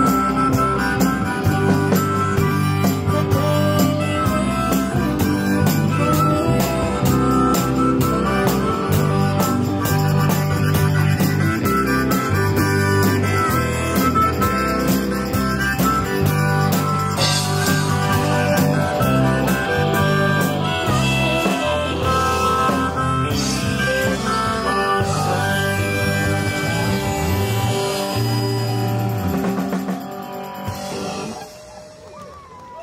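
Live rock-and-roll band playing an instrumental passage, with harmonica over electric guitar, keyboard, bass and drums. The band winds down to held notes near the end.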